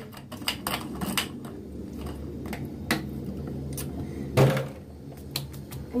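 Small objects being handled at a bathroom sink: a string of light clicks and knocks, such as a plastic top being fitted and items set down on the counter, with one louder knock about four and a half seconds in.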